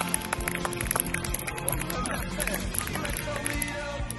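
Background music: a song with a singing voice over a steady beat.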